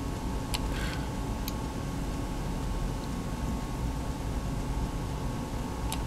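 Steady low hum and hiss of background machine and room noise, with a faint steady high tone and two faint clicks about half a second and a second and a half in.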